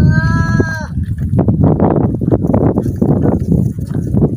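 A goat bleating once, a steady call of just under a second at the start, over a loud low rumble, with scattered crackling afterwards.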